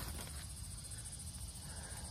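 Faint, high-pitched chirring of insects in a rapid, even pulse, over a low rumble of the phone being handled.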